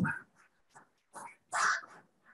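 Applause from a room of students, heard over a video call, coming through in a few short, uneven bursts rather than as a steady wash of clapping.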